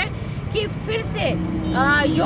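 Mostly speech: a woman talking into the microphones over a steady low outdoor rumble, with a faint steady hum starting partway through.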